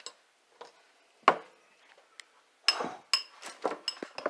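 Handling noise on a kitchen counter: a few separate knocks and clinks, then a quick run of them in the second half, like a bowl and the phone being moved about.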